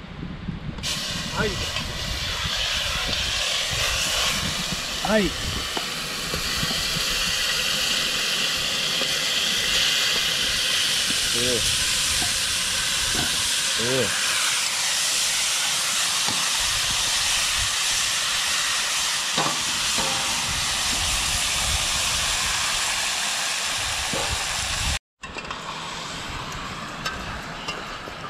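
Wild boar meat sizzling as it browns in a hot pot over a fire: a steady loud hiss. Near the end it drops out for a moment and comes back quieter.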